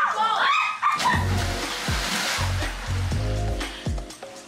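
A person jumping feet-first into a backyard swimming pool: a brief shout, then a splash about a second in with water churning for a couple of seconds. Background music with a steady bass beat runs under it.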